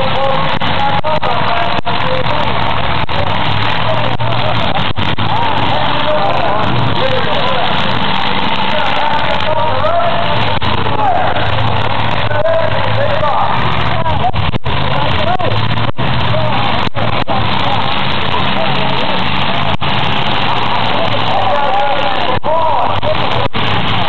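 Demolition derby cars' engines running and revving as they ram each other on the dirt track, under a constant din of crowd voices. The sound is loud and unbroken.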